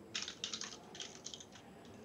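Typing on a computer keyboard: quick, uneven runs of keystrokes as a command is entered in a terminal.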